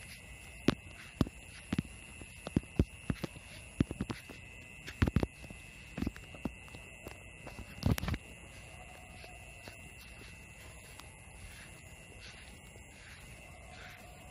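Sharp, irregular clicks and knocks, one or two a second, for about the first eight seconds, ending with a louder cluster. Under them runs a steady high-pitched whine that carries on alone afterwards.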